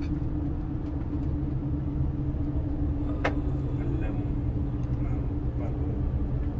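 Steady low road rumble and hum of a car driving, heard from inside the cabin, with one brief sharp sound about three seconds in.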